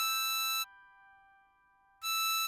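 Diatonic harmonica holding a blow note on hole 8 (E6), which stops about two-thirds of a second in. A faint fading tail of the note follows.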